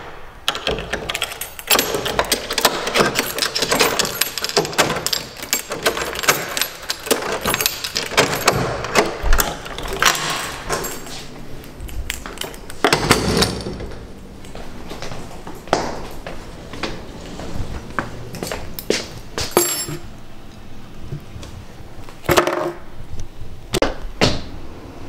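A bunch of keys jangling and a key turning in a metal door lock: a dense run of clicks and rattles for roughly the first twelve seconds, then a few scattered knocks and clunks.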